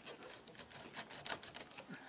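Faint, irregular clicks and scratches of a razor blade being worked under a truck's door emblem, cutting into the adhesive that holds it.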